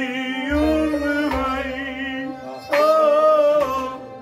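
Kashmiri Sufi song: a man singing over a steady harmonium drone, with a bowed sarangi. The loudest sung phrase comes near the end.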